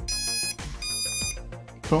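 Brushless motors of a racing quadcopter beeping their ESC start-up tones as the flight battery is plugged in: two high beeps of about half a second each, one after the other.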